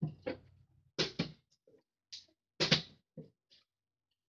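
A partly filled plastic water bottle picked up off a wooden dresser top and handled: a string of short knocks and clicks with quiet gaps between them.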